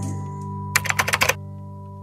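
Background music ending on a held chord that slowly fades. About a second in there is a quick run of about eight sharp clicks, like keyboard typing.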